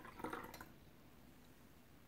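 Faint trickle of water poured from a porcelain gaiwan into a glass pitcher, tapering to drips and stopping about half a second in.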